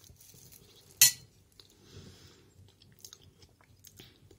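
Quiet chewing of a mouthful of rice porridge, with one sharp clink of a metal spoon against a glass plate about a second in.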